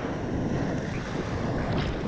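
Breaking ocean wave and surf: a steady rushing noise, with wind noise on the microphone.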